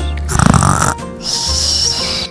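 A short, rough, breathy cartoon sound effect, like a snore or snort, about half a second in over light background music. Near the end comes a high hissing shimmer.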